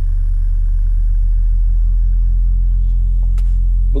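Deep, steady test tone near 43 Hz played through a studio monitor, driving a PVC-pipe Helmholtz resonator bass trap at its tuning frequency.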